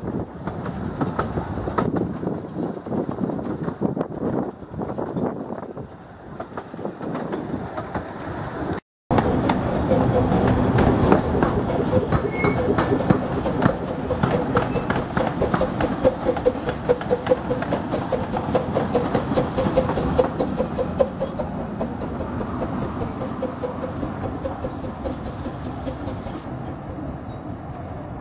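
Running noise of a 15-inch-gauge miniature railway train, first heard from an open coach on the move. After a cut, the coaches roll slowly past with a steady clickety-clack of wheels over the rail joints, easing toward the end.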